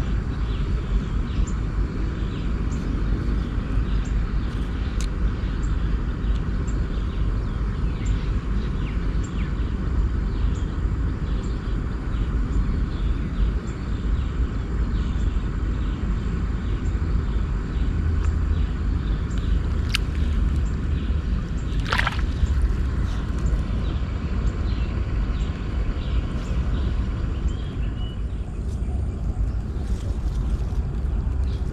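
Steady outdoor background noise with a low rumble, faint regularly repeated high ticks, and two sharp clicks about two seconds apart, past the middle.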